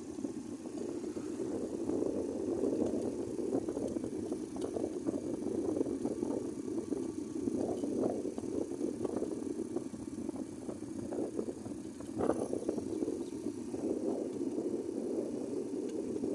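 Small motorcycle on the move, heard from the rider's seat: a steady, rough rush of engine, road and wind noise.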